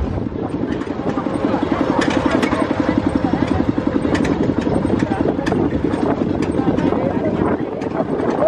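Tractor engine running under way with a fast, even chugging beat, while the trailer rattles and clanks over a bumpy dirt road.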